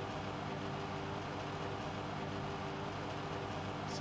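Steady low hum and hiss of room tone, unchanging throughout, with no distinct events.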